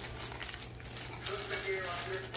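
Plastic packaging crinkling in bursts as a vacuum cleaner accessory still in its wrapping is handled.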